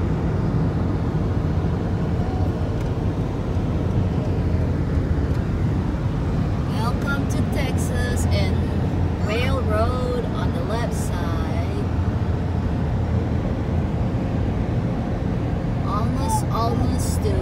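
Steady road and engine noise inside a car's cabin while driving on the highway, a low even rumble. A faint voice is heard briefly in the middle.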